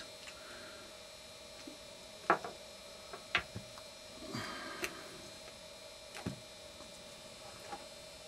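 A few sharp clicks and knocks of plastic connectors and wires being handled, with a brief rustle in the middle, over a steady faint electrical hum.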